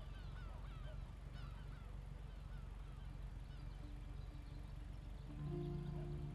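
Faint repeated bird calls, short hooked chirps several times a second, over a low steady music drone from the TV show's soundtrack; a few held music notes come in near the end.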